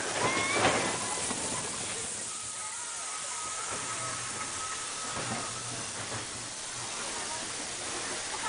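Mine-train roller coaster rolling slowly along its track near the end of the ride, a steady hissing rush with a faint thin whine through the middle few seconds.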